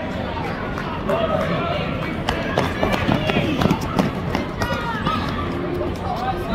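A pack of sprinters' rapid footfalls slapping the indoor track, thickest in the middle as they run past, over steady chatter of spectators.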